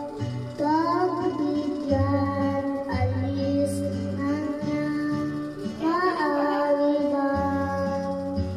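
A young boy singing karaoke into a microphone over a backing track of held chords and a stepping bass line, his voice sliding through notes several times.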